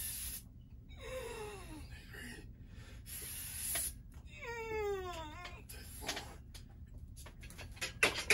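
A man's breathing under strain while bench-pressing a barbell for reps: sharp hissing exhales every few seconds, and twice a short whining groan that falls in pitch, about a second in and again near the middle.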